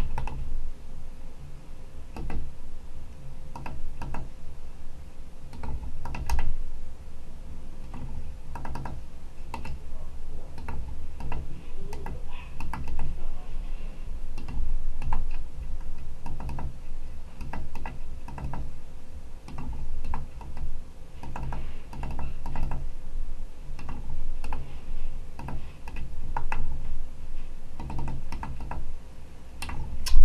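Small pushbutton keys on the relay computer's hex keypad being pressed in quick, irregular runs of clicks, like typing, as program bytes are keyed in and deposited into memory one address after another.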